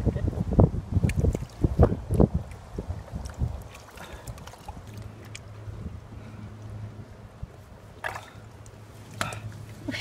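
Repeated low bumps and scuffs from a hand-held phone microphone being knocked about while crawling over rock and reaching into a crab hole, loudest in the first few seconds. After that comes a quieter stretch of low steady hum with scattered faint clicks.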